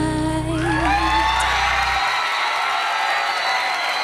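The last held note of a female singer's song over band backing, which stops about two seconds in, as a studio audience breaks into cheering with high, rising whoops.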